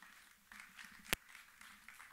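Quiet stage noise of people moving at a podium: faint shuffling and rustling, with one sharp click a little over a second in, the loudest sound.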